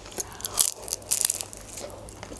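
Close-miked chewing of homemade shawarma in lavash: a quick, irregular run of small clicks that thins out shortly before the end.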